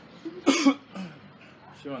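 A person coughing once, a short, loud cough about half a second in.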